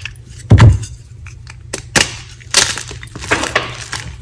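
A block of magnesium carbonate gym chalk snapped and broken apart by hand, with sharp dry cracks and crumbling. A dull thump about half a second in is the loudest sound; sharper snaps follow near two seconds and twice more before the end.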